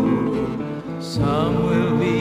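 Early-1960s folk-group recording played from a mono 45 rpm single: an instrumental passage between sung lines, led by strummed acoustic guitar. The music thins briefly about half a second in, and fuller playing returns just after a second.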